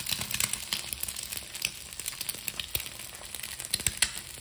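Egg frying in a slice of buttered bread in a pan: a steady sizzle with scattered sharp crackling pops, a louder pop near the end.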